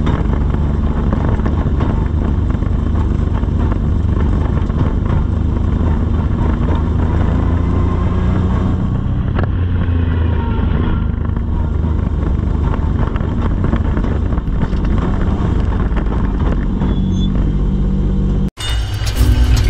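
Legend car's Yamaha four-cylinder motorcycle engine running at low revs, a steady low rumble heard from inside the cabin as the car creeps along at walking-to-jogging pace and comes to a stop.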